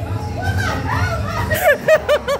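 Indistinct voices, then near the end a person bursts into laughter, a quick run of about five 'ha' bursts a second.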